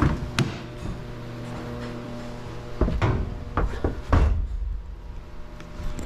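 Car door latch clicking open, then a series of knocks and a heavy low thump as someone climbs into a Hyundai Accent and settles into the seat.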